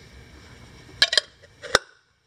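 Chrome wheel center cap clinking against a trailer's wheel hub and lug nuts as it is fitted by hand: two sharp metallic clicks about a second in and another near the end.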